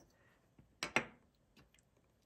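Two light, sharp taps close together about a second in, then a few faint ticks: a small wooden-handled knife and a cedar pencil being set down on a wooden tabletop.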